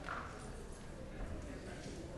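Indistinct murmur of several people talking in a large hearing room, with a few light knocks or footsteps.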